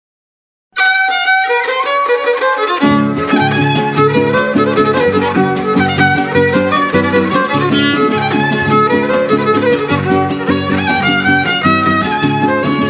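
Son huasteco trio playing a huapango instrumental introduction. The violin enters alone about a second in, and a couple of seconds later the strummed jarana huasteca and huapanguera join with a driving rhythmic accompaniment under the violin melody.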